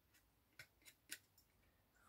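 A few faint, short clicks, the loudest a little past a second in.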